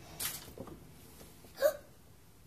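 A sharp, breathy gasp of surprise just after the start, then a short, high-pitched voiced catch of breath near the end.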